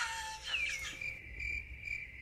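Cricket-chirp sound effect, used as the awkward-silence gag after a joke falls flat. A rapid, even chirping starts about a second in.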